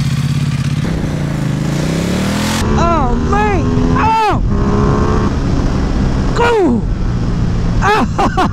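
Ducati XDiavel's V-twin engine running under way with wind noise. Its pitch dips and climbs again in the first couple of seconds, followed by several short sharp rises and falls in pitch.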